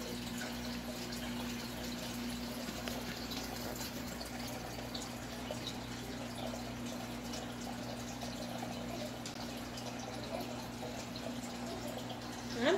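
Aquarium bubble wands bubbling steadily with a fine trickling of water, over a low steady hum.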